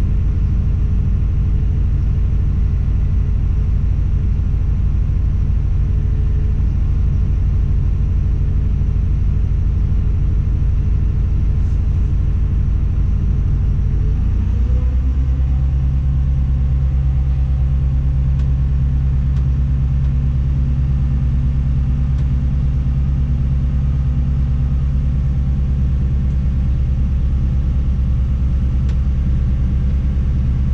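Diesel engine of a Tadano ATF 180G-5 all-terrain crane, heard from inside the operator's cab, running steadily. About halfway through, its speed rises slightly and then holds at the higher pitch as the crane is worked.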